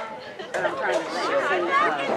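Spectators' voices chattering, several people talking at once; a brief lull in the first half second, then talk resumes.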